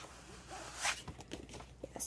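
Paper pages and cover of a paperback coloring book rustling and sliding as the book is handled and turned back to its front cover, with one louder swish a little under a second in.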